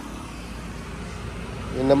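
Steady low hum of a vehicle engine running nearby, with outdoor background noise.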